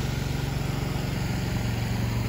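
An engine idling steadily, a low hum with a fast, even throb.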